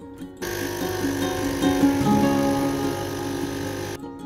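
Capsule coffee machine's pump buzzing steadily as it brews into a cup, starting about half a second in, under background music with plucked guitar.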